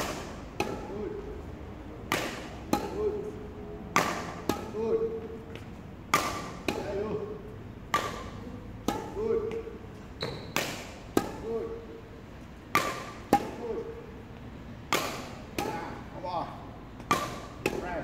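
A badminton player's feet stamping and landing on the indoor court floor during a footwork drill, a sharp thud about once or twice a second, many followed by a short squeak of the shoes.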